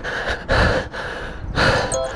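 A man breathing hard and close to the microphone, out of breath from running: two heavy breaths about a second apart.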